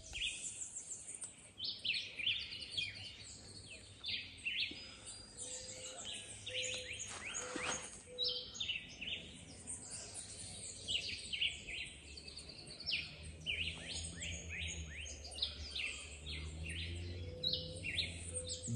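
Many birds chirping and calling at once, a dense chorus of short high calls, over a low steady hum that grows louder near the end.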